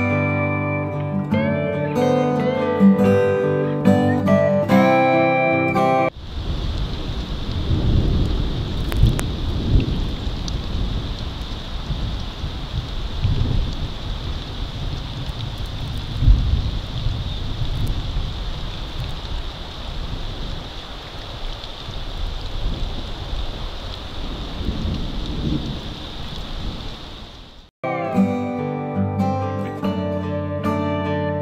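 Plucked acoustic guitar music stops abruptly about six seconds in. It gives way to outdoor sound from the forest camera's microphone: a steady rain-like hiss with irregular low rumbling and a thin, steady high tone. The music comes back suddenly near the end.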